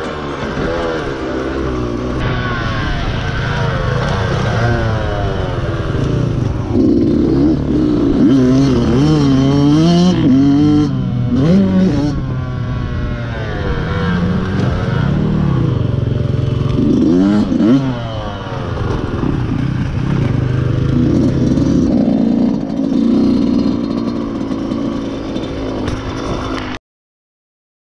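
Dirt bike engine running close to the microphone while riding a dirt track, its pitch rising and falling repeatedly as the throttle is opened and closed.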